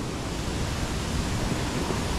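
Ocean surf washing up over the sand, a steady rushing hiss of breaking waves and foam.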